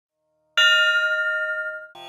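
A single bell strike about half a second in, ringing with several clear overtones and fading away, then cut off just before the end.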